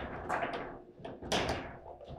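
Table football in play: a few sharp knocks and clacks of the ball, plastic figures and rods against the table, the loudest about one and a half seconds in.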